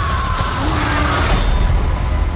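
A woman's long, high scream over trailer music with a heavy low rumble. The cry holds one pitch, sags slightly, and breaks off a little past a second in.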